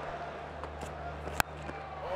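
Cricket bat striking the ball: a single sharp crack about one and a half seconds in, the stroke that lofts the ball high toward the boundary. It sounds over a steady low stadium background.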